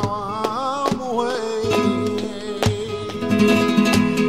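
Flamenco music: a singer's wavering, ornamented line over acoustic guitar for the first second and a half, then held guitar chords punctuated by sharp strums about once a second.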